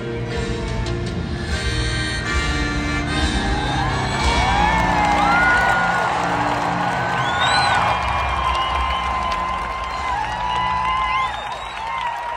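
A live band holding the closing chords of a song through a stadium PA while a large crowd cheers, whoops and whistles over it; the noise eases slightly near the end.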